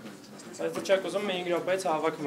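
A person talking in a small lecture room, with no other sound standing out.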